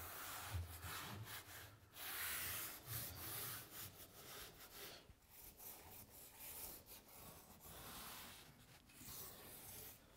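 A hand rubbing and pressing a self-adhered Blueskin VP100 membrane strip down onto a window's nail fin, heard as a series of faint, irregular brushing strokes.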